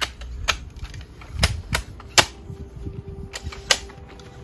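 Telescoping metal ladder being extended up the side of a van, its sections locking out with a series of sharp, uneven clicks, the loudest about two seconds in.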